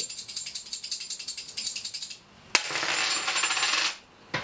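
A handful of old Korean brass coins (yeopjeon) rattled rapidly for a divination reading, a quick run of clicks. After a short pause about two seconds in, a louder, denser rattle of the coins starts suddenly and cuts off abruptly near the end.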